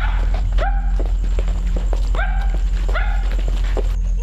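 A dog barking several times, the barks coming in close pairs, over a loud steady low hum.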